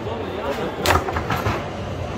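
Foosball table in play: a sharp knock about a second in, followed by a few lighter clacks of ball, rods and figures, over the chatter of a hall.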